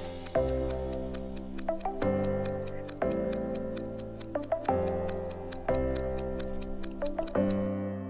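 Fast clock-style ticking of a countdown timer over background music with sustained chords that change about every second and a half; the ticking stops shortly before the end as the countdown runs out.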